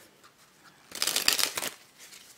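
A deck of Bicycle Peacock playing cards being shuffled: about a second in, a short burst of rapid card flicks lasting under a second.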